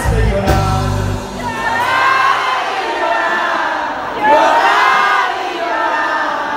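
Live band music with singing and crowd noise. About a second and a half in, the bass and drums drop away, leaving voices singing over lighter accompaniment.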